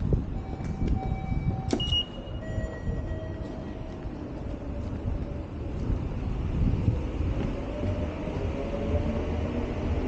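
Rumble of a train in a railway station, with a few short high tones in the first seconds and a whine rising in pitch over the last few seconds, as of an electric train's motors speeding up.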